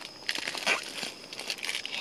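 Crinkling of a packaged hand-warmer packet being handled, in irregular crackles with a louder one about two-thirds of a second in.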